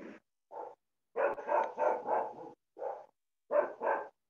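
A dog barking repeatedly over a video-call microphone, about eight short barks with a quick run of them in the middle and dead silence between each.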